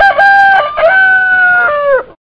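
A rooster crowing: one long call in held notes that step in pitch and drop off at the end.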